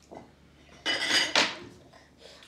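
A brief clatter of tableware on a high chair tray about a second in, ending in a second, sharper knock.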